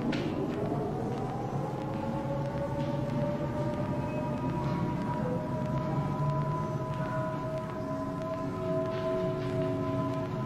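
Air-raid siren winding up in pitch over the first second or so, then holding two steady tones over a low rumble: the red-alert warning of an air raid.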